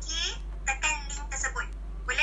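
Speech: a voice talking over a video call, heard through a laptop speaker, with a low steady hum underneath.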